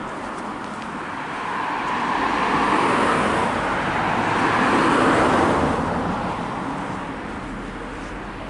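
Road traffic: cars passing on the road alongside, their tyre and engine noise swelling over a couple of seconds, peaking twice, then fading away.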